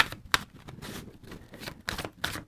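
A deck of oracle cards shuffled by hand: a run of soft clicks and flicks as the cards slide over one another, with a few sharper snaps among them.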